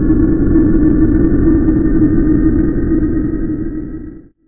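Loud, steady rumbling drone sound effect for an animated outro card, fading out near the end.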